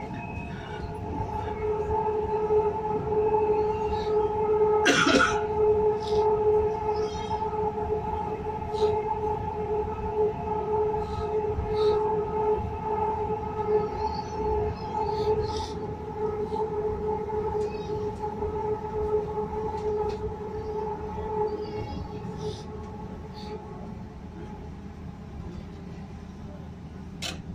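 Hyderabad Metro train running, heard from inside the carriage: a steady electric whine over the low rumble of the wheels, with scattered faint clicks. A brief sharp noise comes about five seconds in, and the whine fades away a few seconds before the end as the train approaches Secunderabad East station.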